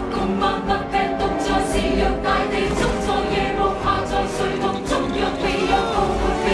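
A choir singing in Cantonese over dramatic film-musical accompaniment, at a steady level.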